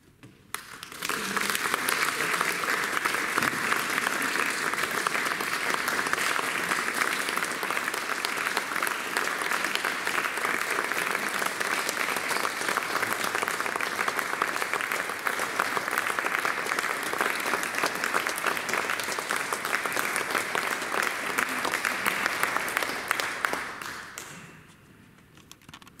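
Audience applauding: the applause breaks out about a second in, holds steady for over twenty seconds, and dies away near the end.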